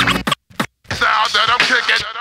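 Boom bap hip-hop beat with kick drum and bass stops abruptly about a third of a second in. After a short gap, turntable scratching of a vocal sample comes in, its pitch wobbling rapidly up and down.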